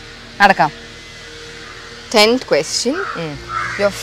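Crow cawing: one short call about half a second in, then a few more in quick succession from about two seconds on, each with a falling pitch.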